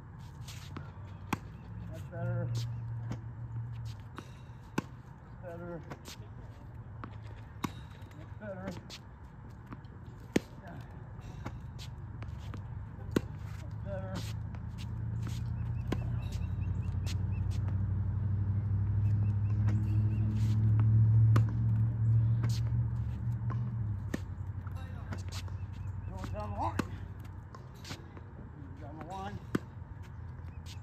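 Tennis practice off a ball machine: sharp pops of racket strikes and ball bounces every one to three seconds. A low rumble swells through the middle and is loudest about two-thirds of the way in.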